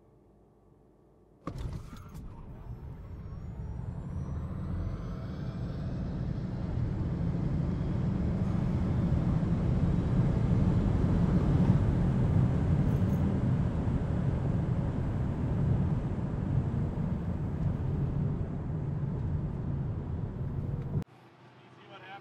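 Tesla Model S Plaid at full acceleration down a drag strip, heard from inside the cabin: a thin electric-motor whine climbs in pitch while road and wind noise swell into a steady loud rush. It starts suddenly after a quiet first second and a half and cuts off abruptly about a second before the end.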